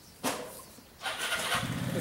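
A short knock near the start, then an engine starting about a second in and running steadily.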